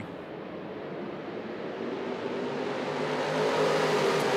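A pack of dirt-track sportsman modifieds with GM 602 crate V8 engines racing under throttle, the massed engine noise growing steadily louder.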